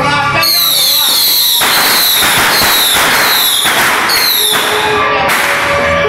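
Firecrackers going off in a dense, rapid crackle for about three seconds, with high whistles falling in pitch near the start and again near the end.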